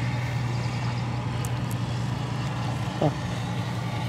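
A steady low mechanical drone, like an engine running at idle, holding level throughout, with a brief faint voice about three seconds in.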